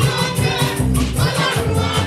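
Gospel music: voices singing together as a choir over live band accompaniment.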